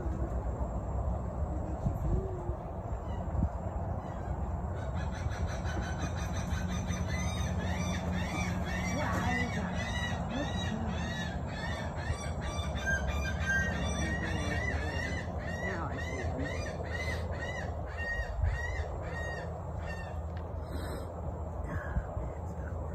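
A bird calling a long run of short, evenly repeated notes, about two or three a second, starting a few seconds in and stopping just before the end, over a steady low rumble.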